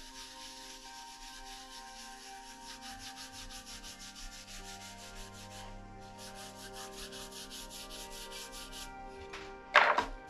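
Stiff printing brush scrubbing black ink back and forth over a carved wooden key block in quick, even strokes, several a second, with a short pause partway through. A short loud knock comes near the end.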